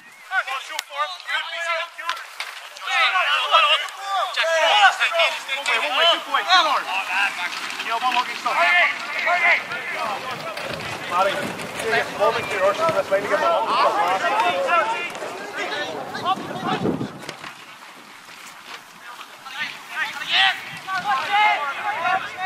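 Shouting and calling from footballers on the pitch, several indistinct voices overlapping, with a brief lull a few seconds before the end.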